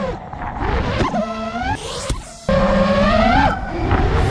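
Micro FPV quadcopter's brushless motors whining, the pitch gliding up and down with the throttle. The sound drops away briefly about two seconds in, then comes back suddenly louder with a rising whine as the throttle is punched.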